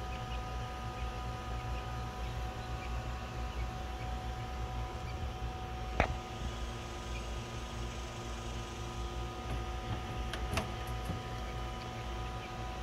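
A small USB micro fan running steadily: a low rumble of moving air with a thin, even whine. A single sharp knock about halfway through and a fainter one near the end come from handling the hutch's plastic grid cover.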